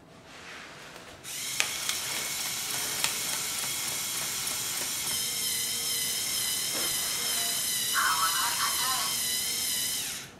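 Lego Mindstorms NXT motors start about a second in and whir steadily while the robot deals out cards, with a few sharp clicks soon after the start.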